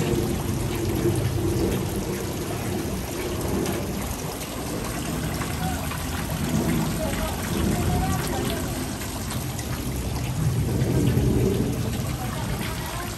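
Steady rushing and trickling of water in a freshwater crayfish pond, with a low rumble underneath.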